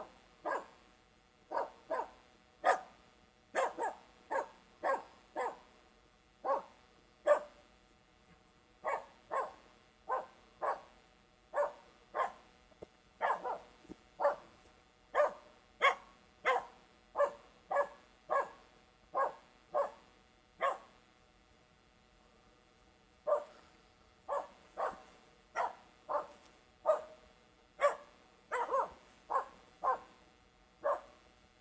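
Finnish Spitz barking over and over, about one bark a second with a short break about two-thirds of the way through. It is overexcited bark-pointer barking with no grouse located, not barking at a treed bird.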